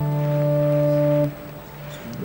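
Organ sounding one steady low note for about a second and a quarter. It cuts off abruptly, leaving a fainter tone held underneath.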